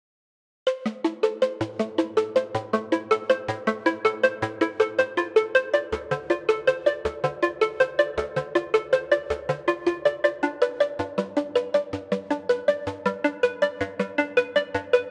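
Zebra HZ software synthesizer playing the Frost preset 'ARP Larm': a woody, percolating arpeggio of rapid, evenly spaced plucked notes that starts just under a second in. A low bass line joins about a second later, and deeper bass notes come in from about six seconds in.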